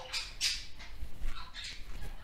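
Faint breathing and soft vocal sounds from a woman, over quiet room tone.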